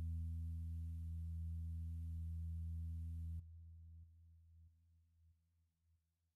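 A low, steady electronic drone, a held bass note from the closing background music. It cuts off suddenly about three and a half seconds in, leaving a faint tail that fades away.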